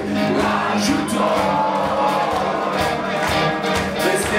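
Live rock band playing loud, with electric guitars and drums driving a steady beat.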